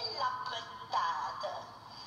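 A woman's voice declaiming verse in a high, sing-song chant, holding notes and sliding up and down between them.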